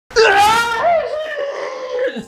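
A man's drawn-out, strained yell of anger and frustration. It is loudest in the first second, its pitch rising and then falling back, and it is then held more quietly.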